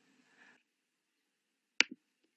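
Near silence broken by a single sharp click near the end.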